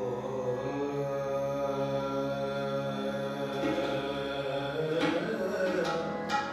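Sikh kirtan: harmoniums holding long steady chords under a sustained sung note, in a chant-like drone. About five seconds in, the notes shift and waver as the melody moves on.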